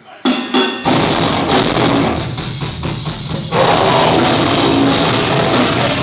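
Live heavy rock band starting a song: a few sharp hits, then drums and electric guitar together, getting louder and fuller about three and a half seconds in.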